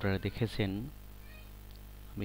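A man's voice speaking a short phrase in the first second, over a steady low electrical hum.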